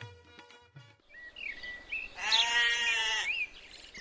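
Sitar-and-tabla music ends about a second in, then a few short bird chirps, and a sheep bleats once: one wavering call lasting about a second.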